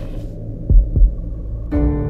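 Soundtrack heartbeat effect: a low double thump, like a heartbeat, about a second in, over a steady low hum. Near the end a sustained, held music chord comes in.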